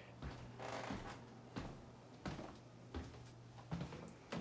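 Faint footsteps on a hardwood floor, about one step every 0.7 s, over a steady low hum.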